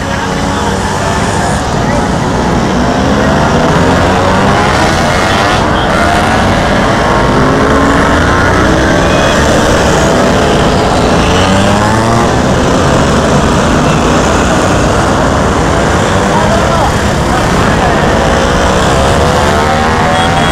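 Many classic Vespa scooters' small two-stroke engines running together as a procession rides past close by on a steep climb. Their engine notes overlap and rise and fall as the scooters pass.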